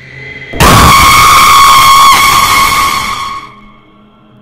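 A sudden, very loud jump-scare stinger in a film soundtrack: a harsh blast with a steady high tone that hits about half a second in, holds for nearly three seconds, then fades out.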